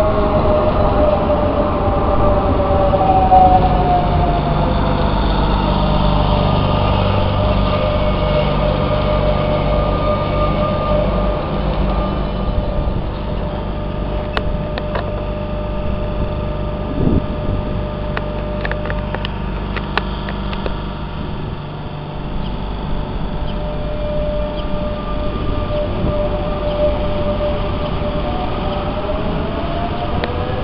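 Renfe regional electric multiple unit moving slowly past on the rails: a low rumble and a whine from its traction motors that falls in pitch early on, holds steady, then rises again near the end. A run of sharp clicks from the wheels crossing rail joints comes in the middle.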